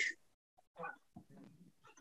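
Near-quiet video-call audio with a faint, short voice-like sound just before a second in, and fainter traces after it.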